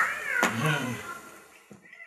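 A meow-like whining cry that slides down in pitch, followed by a shorter, lower vocal sound that fades away.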